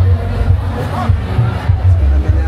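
Loud bass-heavy music over a concert sound system, with a crowd shouting over it. One voice rises above the rest about halfway through.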